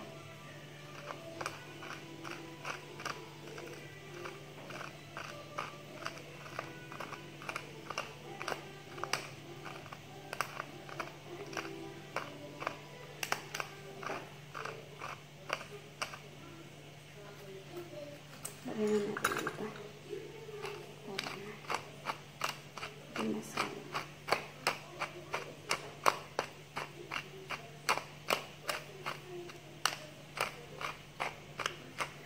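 Black pepper being ground in a hand-twisted stainless-steel pepper mill: a long run of crunching clicks, about two a second, louder in the last third.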